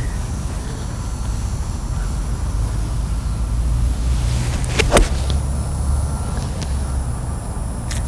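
Golf iron striking a ball off fairway turf: a short rising swish of the downswing, then one sharp click of impact about five seconds in, over a steady low rumble.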